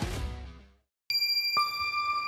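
Guitar rock outro music fading out, a moment of silence, then bell-like chime notes ringing out about a second in, with a second, lower note half a second later: the start of a logo jingle.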